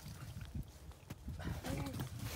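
Low, uneven rumble of wind on the microphone, then a man's drawn-out excited "oh" near the end.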